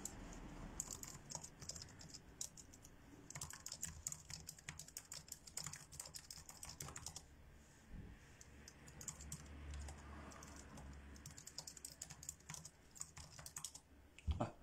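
Faint runs of rapid, irregular keystroke clicks on a computer keyboard, coming in three bursts with short pauses between.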